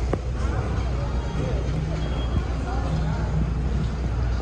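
Airport terminal ambience: a steady low rumble with faint, indistinct voices in the background and one sharp click just after the start.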